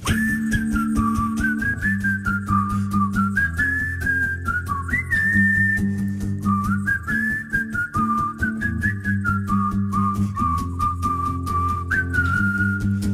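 Whistled pop melody over strummed acoustic guitar chords. The whistle slides up into many of its notes.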